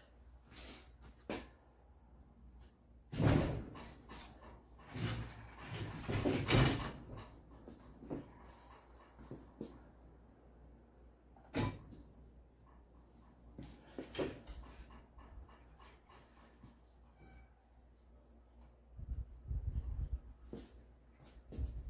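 Scattered metal clunks and knocks from an engine hoist and the engine hanging on it as it is lowered and worked into a truck's engine bay, the loudest a few seconds in and around six seconds in, with a sharp click near the middle and a short rattle near the end.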